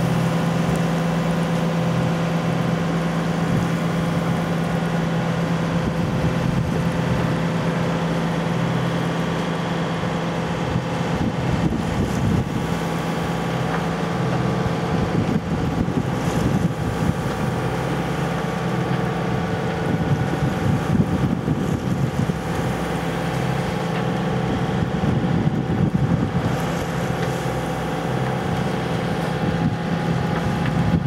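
Boat engine running steadily at one even pitch while under way, with stretches of wind rumble on the microphone in the middle and later part.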